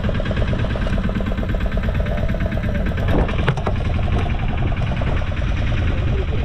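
A fishing boat's engine running steadily with an even, rapid pulse. A couple of sharp knocks sound a little over three seconds in.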